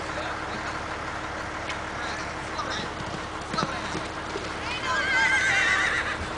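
A horse galloping through a barrel-racing run on arena dirt: hoofbeats under background voices. Near the end comes a loud, high, wavering call.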